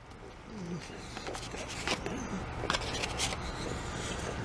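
A man chewing a bite of hamburger wrapped in lavash bread: faint mouth and chewing noises with a few short sharp clicks, and a brief low murmur about half a second in.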